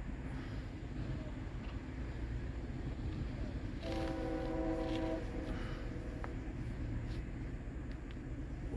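Distant diesel freight locomotive horn sounding one multi-note chord for about a second and a half, about halfway through, over a low steady rumble.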